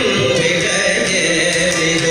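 Male Carnatic vocalist singing a slow, held devotional melody with violin and mridangam accompaniment, over the steady drone of an electronic tanpura.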